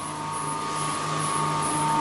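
Running micro hydro plant machinery, a Francis turbine driving a grid-tied alternator by flat belt, making a steady noisy hum: several constant tones over a hiss.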